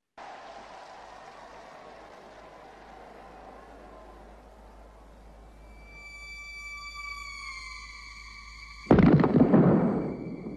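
Film soundtrack of a sprint start: a steady hushed murmur, then sustained electronic tones that slide slowly downward, and near the end one sudden loud blast lasting about a second, the starter's pistol.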